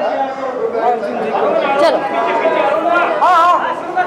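Several people's voices talking over each other in a crowd, with one voice calling out, rising and falling, about three seconds in.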